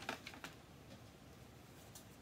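A quick run of about four light clicks and taps in the first half-second, then low room tone: small hard crafting items being handled on a table.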